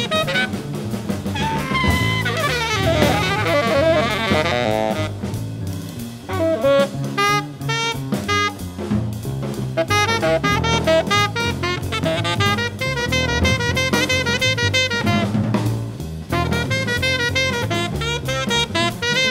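Free-jazz quartet playing: tenor saxophone and trumpet lines over double bass and a busy drum kit, with a stretch of swooping, gliding horn pitches a few seconds in.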